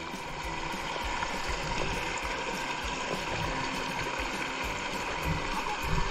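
Shallow stream water rushing and churning through a mesh hand net held in the current, a steady rush with no break.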